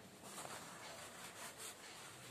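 Faint rustling and scraping of a fabric clutch bag and its zip being handled, with a few soft scratchy strokes.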